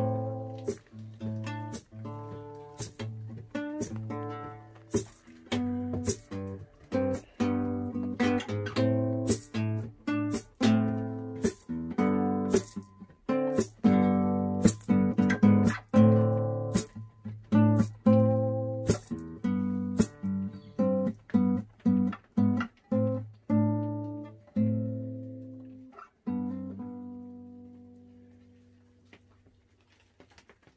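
Classical nylon-string guitar strummed solo in a steady rhythm of full chords, the instrumental close of a song. About 26 seconds in, a final chord is struck and left to ring, fading out over the last few seconds.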